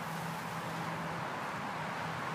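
Steady outdoor background noise of distant road traffic, with a faint low hum that fades out a little over a second in.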